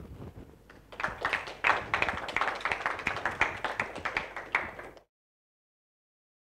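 Audience applauding with many separate, irregular claps, starting about a second in and cut off suddenly about five seconds in.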